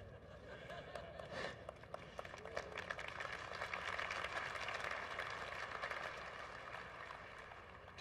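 Faint audience applause: a dense patter of hand claps that builds over the first few seconds, peaks mid-way and dies away near the end.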